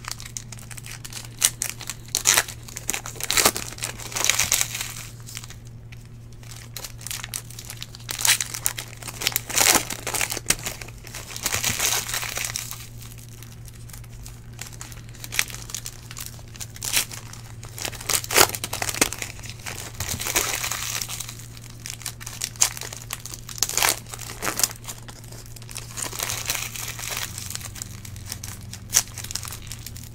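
Foil trading-card pack wrappers being torn open and crinkled by hand, in bursts every few seconds with sharp crackles, over a steady low hum.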